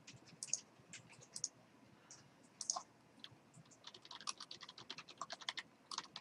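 Faint typing on a computer keyboard as login details are entered: a few scattered keystrokes, then a quicker run of keys from about four seconds in.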